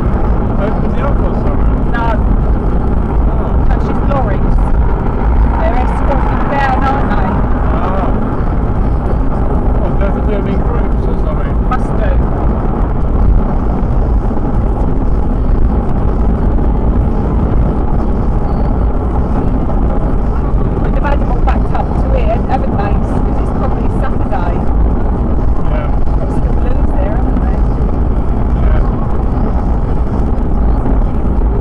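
Car cabin road noise at motorway speed: a steady low rumble of tyres and engine, with indistinct voices at times, during the first several seconds and again about two-thirds of the way through.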